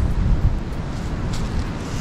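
Wind buffeting the camera microphone: uneven low rumbling, strongest in the first half-second, over a steady outdoor hiss.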